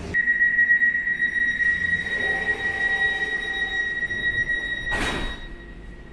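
A steady high-pitched tone with a fainter overtone above it, broken by a short burst of noise about five seconds in, then fading away near the end.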